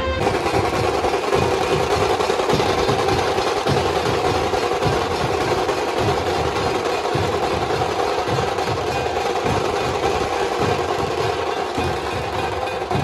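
Dhol-tasha troupe drumming: big barrel-shaped dhol drums beaten in a dense, driving rhythm under fast continuous rolls of tasha drums.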